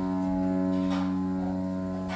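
Piano holding one sustained chord that slowly fades, with no new notes struck.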